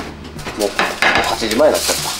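Dishes and cutlery clinking and clattering in a kitchen, as plates and food containers are handled. A brief wavering pitched sound runs through the second half.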